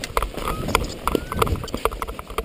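Footsteps of a paraglider pilot running out a landing on dry, stony ground: a quick, irregular series of thuds and knocks as the rushing wind noise of flight dies away.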